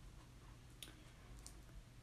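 Near silence: room tone with a couple of faint clicks from fingers handling a cardboard box, the clearest a little under a second in.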